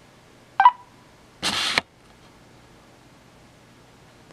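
RCA Small Wonder pocket camcorder powering up: a short, loud beep about half a second in, then a brief hiss-like burst a second later.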